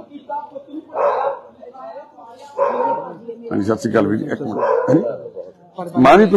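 A dog barking several times, in short separate barks and then a quicker run of them, with people's voices around it.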